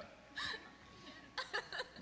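Brief vocal sounds from people in the congregation: a short burst about half a second in and a few clipped sounds a little after halfway.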